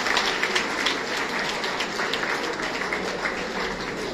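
Audience applauding, a dense patter of many hands clapping that slowly dies down.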